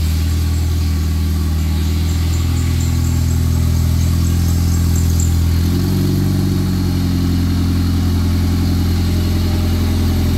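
A Honda Accord's four-cylinder engine idling steadily just after its first start, with the idle note shifting slightly lower about six seconds in.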